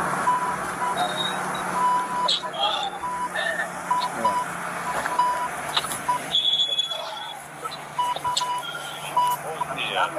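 Short bursts of a steady censor beep tone, cutting in and out irregularly many times over faint phone-call speech: redaction bleeps laid over police body-camera audio.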